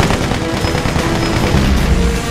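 Rapid machine-gun fire, a fast run of shots, over background music with low sustained notes.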